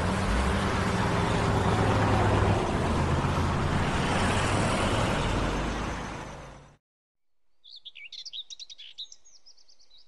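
A loud, even rushing noise with a low steady hum under it, which cuts off abruptly about seven seconds in. After a brief silence, small birds chirp in quick, repeated calls over a faint background.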